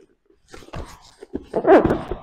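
Grapplers scrambling on a padded mat: scuffs and several dull thumps of feet and bodies on the mat, with a short grunt of effort near the end.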